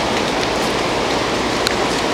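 Steady city-street noise with traffic, a dense even hiss, with one small click near the end.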